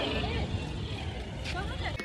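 Steady low rumble of station noise with faint distant voices.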